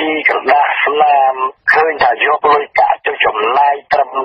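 Speech only: a voice reading the news continuously in short phrases with brief pauses, with no other sound.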